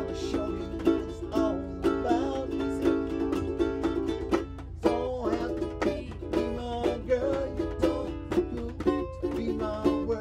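Several ukuleles strummed together in a steady rhythm, with a steady low hum underneath.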